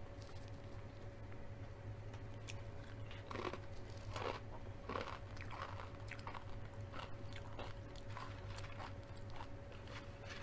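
Close-miked crunching and chewing of crisp chips dipped in cheese sauce: irregular crackly bites, loudest a few seconds in, over a faint steady electrical hum.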